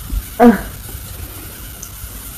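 A girl's short spoken word, then quiet room noise with faint low bumps and rustle.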